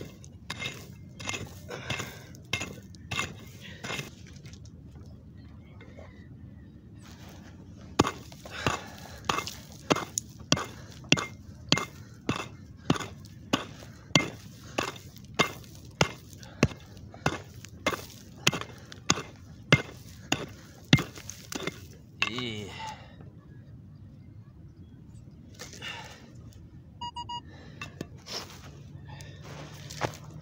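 A pick hacking into dry, stony soil again and again to dig out a metal-detector target, about two blows a second, with a pause of a few seconds after the first handful. Near the end a metal detector gives a short run of beeps over the target.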